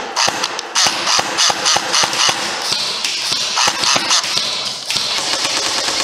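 Airsoft rifle firing rapid semi-automatic shots, about four a second, in a continuous string.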